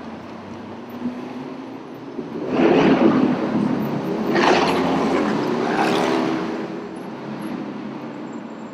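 City street traffic: a motor vehicle's engine gets loud about two and a half seconds in and stays loud for about four seconds as it passes, then eases back into the background traffic.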